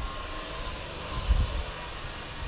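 Low, steady background rumble with a faint thin hum in a pause between speech.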